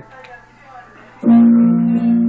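An instrumental backing track starts suddenly about a second in, loud, with steady held notes; before it there is only a short, quiet stretch.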